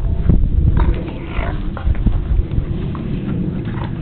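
A Siberian husky and a puppy growling and grunting at each other as they play-fight, with a wavering vocal sound about a second in, over a loud low rumble.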